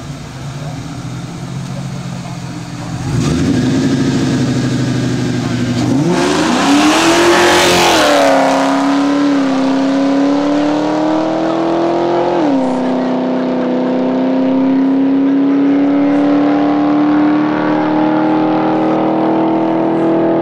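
A Ford Mustang and a Subaru WRX launching side by side in a drag race, about three seconds in, and accelerating hard away. Engine pitch climbs and drops back at two upshifts, then climbs steadily as the cars pull into the distance.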